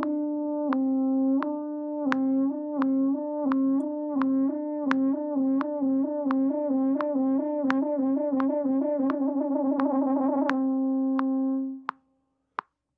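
French horn practising a whole-step lip trill from written G to A: a held note breaks into slow, even alternations with the note above, which speed up into a fast trill and then settle back on the held note near the end. Faint regular clicks keep the beat throughout.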